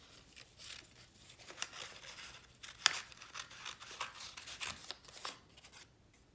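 Small craft scissors snipping through a sheet of painted paper: a run of short cuts, with one sharper snip about three seconds in.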